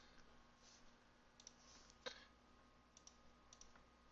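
Faint computer mouse clicks over near silence: a few scattered single clicks, the loudest about two seconds in.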